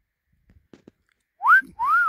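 A two-note wolf whistle beginning about a second and a half in: a short upward slide, then a longer note that rises and falls.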